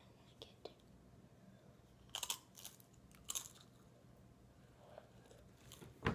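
Tortilla chip being bitten and crunched: two sharp crunches about a second apart in the middle, with a few faint clicks before and a softer one near the end.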